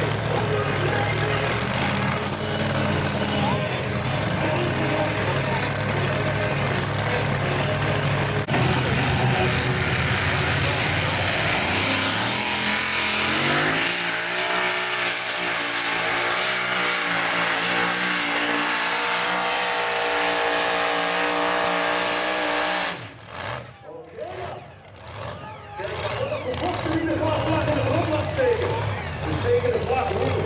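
High-powered competition pulling-tractor engine running at the sled. It idles unevenly, then revs up with a rising pitch about 12 seconds in and holds high. Around 23 seconds the sound drops away abruptly in a few choppy breaks before picking up again.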